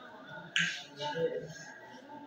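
Marker writing on a whiteboard: one short, sharp, scratchy stroke about half a second in, then fainter marker sounds.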